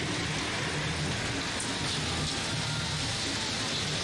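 Steady background din of a packed gymnasium during a robot competition match: spectators' crowd noise mixed with the machinery of the robots on the field, as an even wash with no single event standing out.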